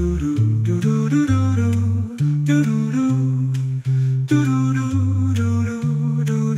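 A cappella voices humming a wordless passage, a low bass voice stepping between long held notes under higher sustained harmonies, with short percussive clicks keeping time.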